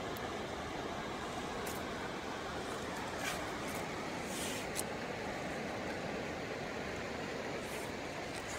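Steady rushing of surf on a sandy beach, with a few faint ticks about three to five seconds in.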